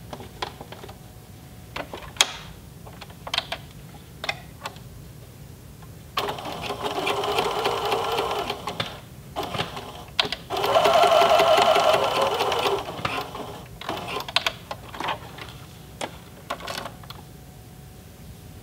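Electric sewing machine running a straight stitch in two short runs, the first about six seconds in and the second, louder one about ten seconds in. Scattered sharp clicks come before, between and after the runs.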